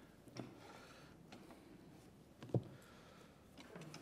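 Quiet microphone-handling noise as a headset ear mic is put on: faint clicks and rustles, with one soft low bump about two and a half seconds in.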